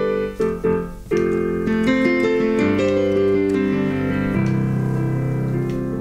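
Digital piano improvising a slow piece of sustained chords under a melody, with a brief thinning of the playing about half a second in before fuller chords come back in just after a second.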